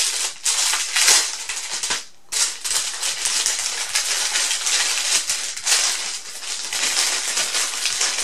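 Plastic packaging of a makeup brush set crinkling and rustling as it is handled and opened, with a short pause about two seconds in.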